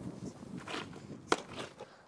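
Army boots on tarmac as a soldier turns and marches off, with one sharp boot strike just over a second in.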